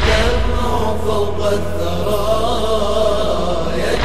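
Voices chanting a long, wavering, held line over a steady low drone, as a devotional lament closes. The chant swells anew at the start and again near the end.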